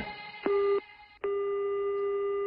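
Telephone ringback tone on an outgoing call: a short steady beep, then a longer steady tone of about a second and a half, the line ringing before it is answered.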